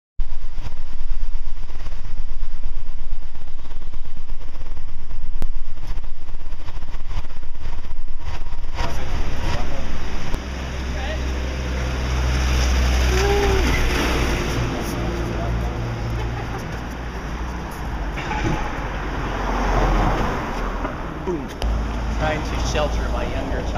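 Steady low rumble of a moving vehicle heard from inside its cabin, loud. About ten seconds in it cuts off suddenly to quieter city street sound with traffic and people's voices.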